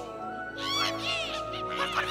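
Background music holding steady chords, with short, high, squeaky cartoon-creature cries (Pokémon calling out) about three-quarters of a second in and again near the end, each one rising then falling in pitch.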